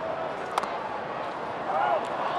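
A single sharp pop about half a second in as a pitched baseball hits the catcher's mitt, over steady ballpark crowd noise. Near the end comes a short shouted call, which fits the umpire calling a strike.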